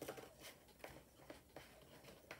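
Faint handling sounds from paper and a small thin cutting die being moved by hand across a sheet of designer paper: a few soft ticks and rustles spread over the two seconds.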